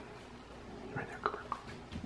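A quiet room with faint whispered speech about a second in.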